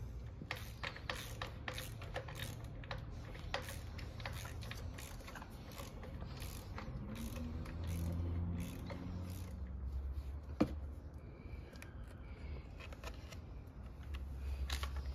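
A hand tool tightening the bolts on a pressure washer's handle frame: a series of light clicks and scrapes, most frequent in the first half, with one louder knock about ten and a half seconds in.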